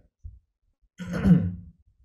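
A man's brief, breathy sigh about a second in.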